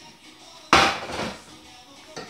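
A frying pan set down on a glass-ceramic hob: one sharp clank about two-thirds of a second in, with a brief ring after it.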